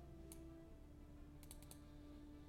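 Computer mouse clicking, faint: a single click, then a quick run of four clicks about a second and a half in, over soft background music with slowly changing held notes.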